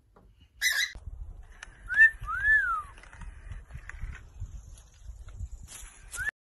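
Two clear whistled notes, each rising and then falling, about two seconds in, after a short sharp burst of sound just before the first second. A rising whistled note begins again near the end.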